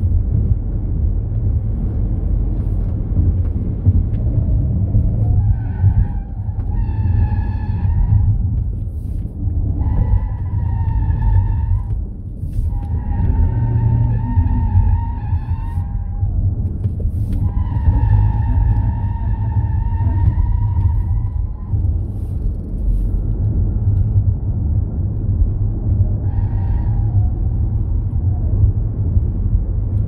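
Steady low road and wind rumble in the cabin of an electric Ford Mustang Mach-E GT at racing speed, with no engine note. The tyres squeal in several bursts of a second or a few seconds as the car is pushed through corners, the longest from about 6 s to 22 s, and once more briefly near the end.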